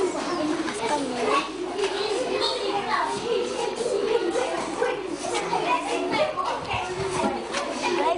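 Many children talking at once around a table, a steady babble of overlapping young voices with no single speaker standing out.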